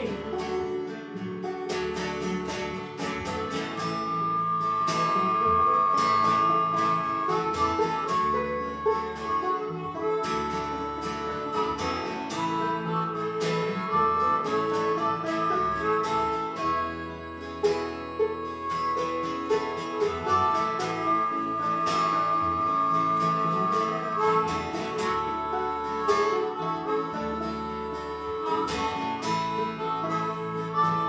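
Live acoustic bluegrass band playing an instrumental break: acoustic guitar and five-string banjo picking, with a harmonica playing held lead notes over them.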